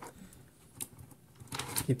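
Faint handling sounds of Fluke TL175 silicone-insulated test leads: a few light clicks and rustles as the wire twist tie holding the coiled leads is undone.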